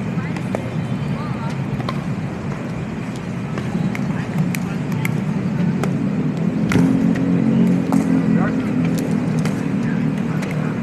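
Pickleball paddles hitting a hard plastic ball, scattered sharp pops, over a low steady rumble of road traffic that swells in the second half.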